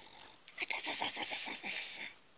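A person's voice making a rapid, rattling growl of about a second and a half, starting about half a second in, heard as "demonic sounds".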